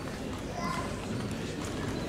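High-heeled shoes clicking on a wooden stage floor as several people step and turn in place: scattered, uneven heel taps over a murmur of voices.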